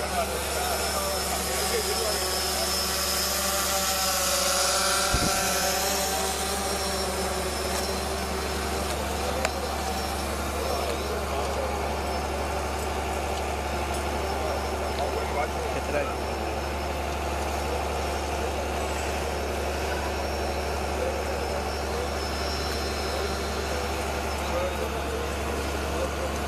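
Indistinct voices of a gathered group, clearest in the first few seconds, over a steady low hum.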